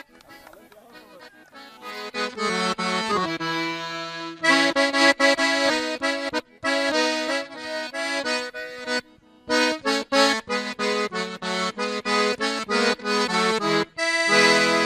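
Accordion playing an instrumental passage between sung trova verses. It is faint for about the first two seconds, then plays a rhythmic run of chords and melody notes.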